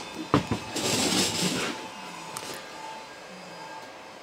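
Metal wheeled stand of a cordless table saw being tipped and folded up into its upright transport position: two knocks, then a rattling clatter that dies away within the first two seconds.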